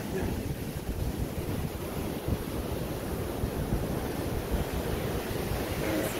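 Ocean surf breaking and washing up a sandy beach, a steady rushing noise, with wind buffeting the microphone as a low, flickering rumble.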